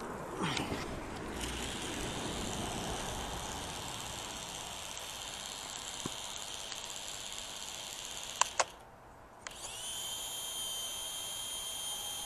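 The motors and propellers of a small LSRC quadcopter whine steadily as it hovers low. About eight and a half seconds in there are a couple of sharp clicks, the whine cuts out for about a second, and then it starts up again. One of the drone's propellers is broken, by the flyer's account.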